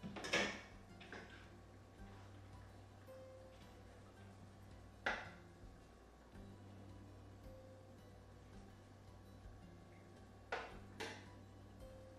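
A few sharp clinks of a metal spoon against the stainless-steel cooking pot as the thick curry sauce is stirred, one about five seconds in and two close together near the end, over faint background music and a steady low hum.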